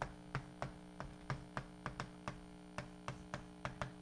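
Chalk writing on a blackboard: a quick, even series of sharp taps, about four a second, as each letter stroke strikes the slate, over a steady electrical hum.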